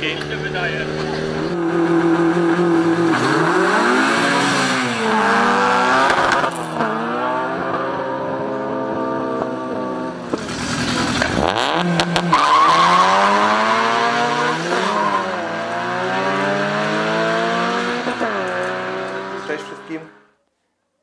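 Race cars' engines revving hard as they launch and accelerate in a drag race, the pitch climbing in each gear and dropping back at each gear change, several times over.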